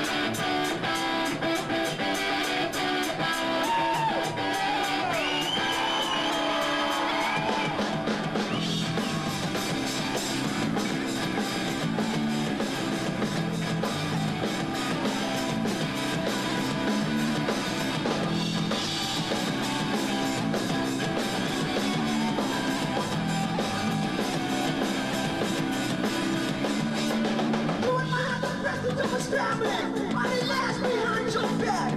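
A power rock band playing live at full volume: electric guitars, bass guitar and a drum kit.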